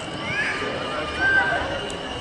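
Background voices with a brief high-pitched call a little past the middle.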